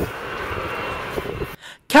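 Steady rushing jet noise from a Boeing 727's three rear-mounted turbofan engines as the airliner lands and rolls out on the runway. The noise cuts off suddenly about a second and a half in.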